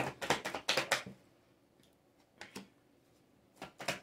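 A deck of tarot cards being shuffled and handled: a quick run of sharp card clicks and snaps in the first second, two more about halfway, and another short run near the end as a card is drawn.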